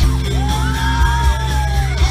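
Live rock band playing in a large hall, with bass, drums and electric guitars. Over the music a high voice holds one long note for about a second and a half.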